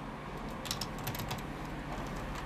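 Fingers typing on a computer keyboard: irregular quick key clicks, bunched in short runs, over a steady low room hum.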